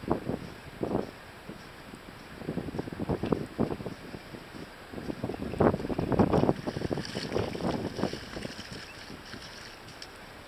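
Wind buffeting the camera's microphone in uneven gusts, loudest about six seconds in, over a low steady hiss.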